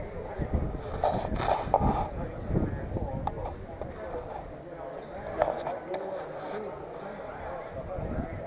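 Indistinct voices of people talking nearby, over a low, uneven rumble.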